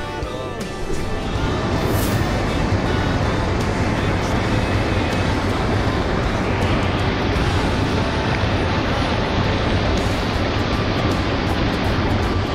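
Stream water rushing and bubbling around a half-submerged camera: a steady, even wash of noise, with music fading underneath in the first couple of seconds.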